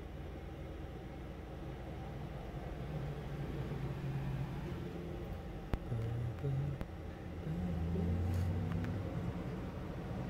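Low, steady rumble of a running vehicle engine whose pitch shifts a little, with a single sharp click about six seconds in.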